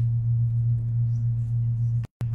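Steady low electrical hum, loud and unchanging, typical of mains interference in a sound system.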